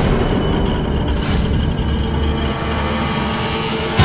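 Ominous dramatic background score over a heavy, steady low rumble, with a brief swish about a second in.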